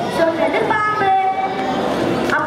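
A boy's voice at a microphone in drawn-out, sing-song tones, with several pitches held steady for about half a second each.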